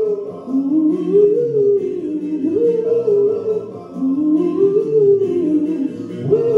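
A man singing a slow doo-wop ballad into a handheld microphone over an instrumental backing track, with long held notes that slide up and down in pitch.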